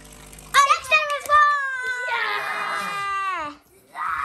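A young child's high-pitched wordless vocalizing: a few short calls about half a second in, then a long drawn-out call that falls in pitch and fades out just before the end.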